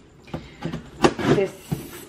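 A cardboard shipping box being handled and opened: a few light knocks and rustles of cardboard, with one short spoken word about a second in.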